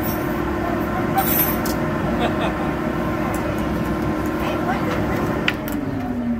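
Steady rush of air and low hum from a Bernoulli blower exhibit's air jets, with the hum dropping lower just before the end. A brief high rattle comes a little over a second in.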